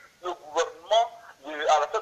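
A man speaking, his words not made out.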